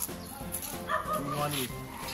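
Elephant giving short whining squeaks, two arched calls that rise and fall in pitch.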